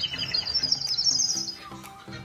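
Clay bird water whistle being blown, giving a high, rapid warbling trill like birdsong that fades out about a second and a half in.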